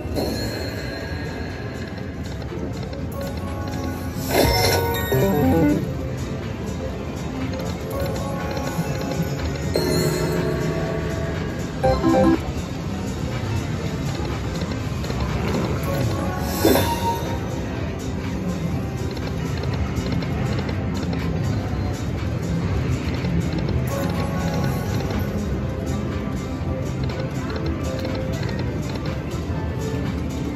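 Video slot machine's bonus-round music playing steadily through a run of free spins. Louder bursts of reel-stop and win sounds come about four and a half, twelve and seventeen seconds in.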